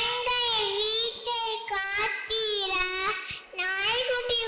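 A young girl singing into a microphone, her high voice holding and bending notes in short phrases with brief breaths between them.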